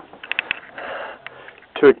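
A person sniffing and drawing breath through the nose, two short breathy intakes with a few small clicks, just before speech starts near the end.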